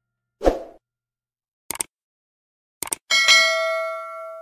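Animation sound effects of a like-and-subscribe end screen: a short thud about half a second in, a sharp click, then a quick double click. About three seconds in comes a notification-style bell ding with several clear ringing tones, fading slowly.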